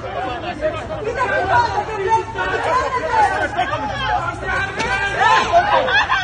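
Several people talking over one another, overlapping voices that grow louder near the end.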